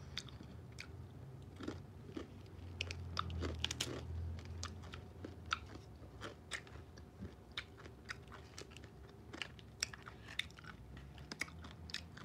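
A person chewing crunchy food close to the microphone: faint, irregular small crunches and clicks a few times a second.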